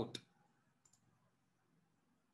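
A single faint computer mouse click a little under a second in, otherwise near silence.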